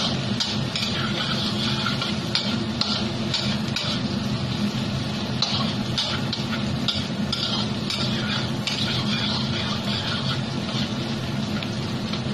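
Stir-frying in a stainless-steel wok: a metal spatula scraping and turning pork in sizzling oil in repeated irregular strokes, over a steady low hum.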